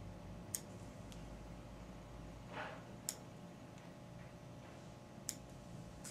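Small fly-tying scissors snipping the spandex rubber legs of a stonefly nymph fly: three short, sharp clicks spaced a couple of seconds apart, with a fainter tick and a soft rustle between them.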